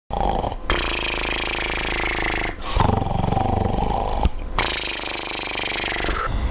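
A man snoring loudly in three long, rattling snores, with short gaps between them.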